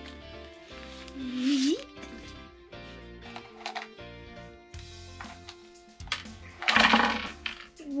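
Background music, with handling of a small plastic toy trash can and a short gliding vocal sound about a second and a half in; near the end, a clatter of small plastic toy parts tipped out onto a table.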